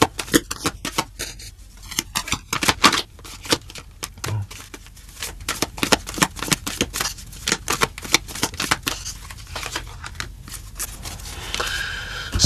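A deck of tarot cards being shuffled by hand: a long run of quick card clicks and flutters.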